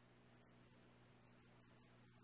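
Near silence: a faint steady low hum over hiss.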